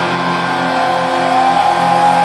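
A live hard rock band playing, with electric guitar holding sustained notes. About 1.3 s in, a high note slides up and is held.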